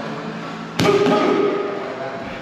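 A single sharp smack of a boxing glove and a boxing training stick colliding, about a second in, followed by a short ringing tail that fades in the hall.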